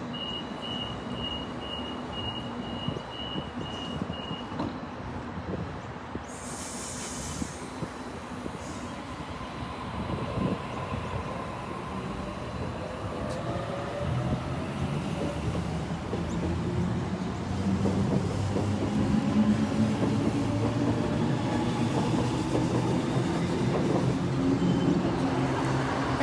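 Sydney Trains B-set (Waratah Series 2) electric train at the platform: a steady high beep for the first few seconds, then a short hiss of air about six seconds in. From about ten seconds in, its traction motors whine, rising in pitch and growing louder as it pulls away.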